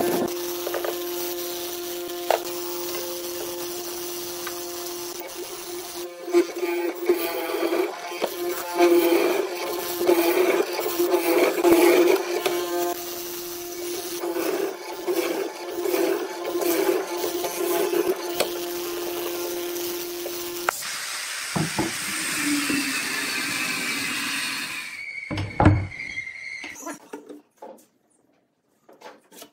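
MK361A hollow-chisel mortising machine running with a steady hum while its square chisel is plunged again and again into pine, with short knocks as it bites. The hum stops about three-quarters of the way through.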